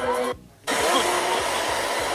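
A cheering crowd with music cuts off about a third of a second in. After a short gap comes a steady rushing noise on an airport apron beside a parked private jet.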